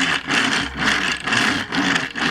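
All-plastic tyres of an oversized knock-off MP-10 Optimus Prime toy truck rolling across a tabletop: a loud, continuous rumbling clatter, very noisy, like a tank moving rather than a truck. The hard plastic wheels, with no rubber, are what make it this noisy.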